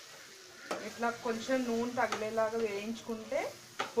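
A spatula stirring dry rice rava in a metal kadai, scraping through the grains with a couple of sharp knocks against the pan. From under a second in, a woman's voice talks over the stirring.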